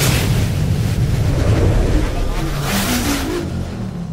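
Cinematic intro sound effects: a deep rumble with two big whooshing sweeps, one at the start and one about three seconds in, and a short rising run of notes near the end.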